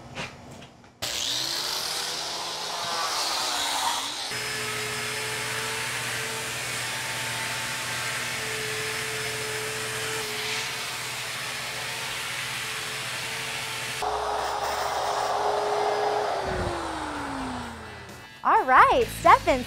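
Handheld electric rotary grinder running against a block of ice, a steady motor whine over the hiss of ice being ground away. It starts abruptly about a second in, and near the end its pitch falls as the tool winds down.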